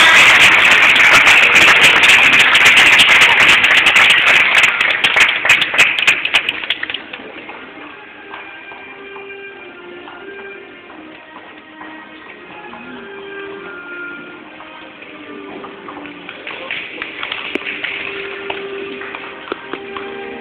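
Audience applauding, loud at first and dying away about seven seconds in, followed by quiet background music with held notes.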